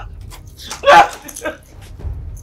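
A woman's short whimpering cry about a second in, followed by a fainter one: distressed sobbing.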